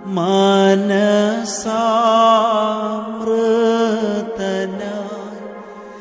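Instrumental interlude of a Malayalam Christian devotional song: a keyboard melody of long held, gliding notes over a steady low drone.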